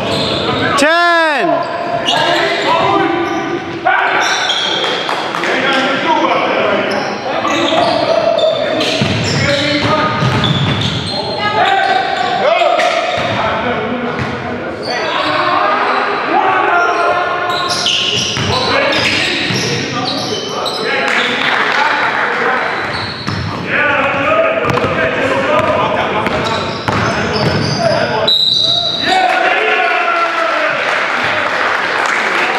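Basketball game sounds in a gymnasium: a ball bouncing on the hardwood court among players' voices, echoing in the hall. A falling swoosh comes about a second in.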